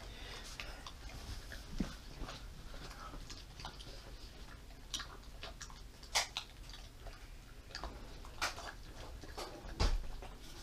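Dog eating steak and rice off a ceramic plate: quiet chewing and licking broken by a few sharp clicks of teeth and food against the plate, the loudest about six seconds in and again near the end.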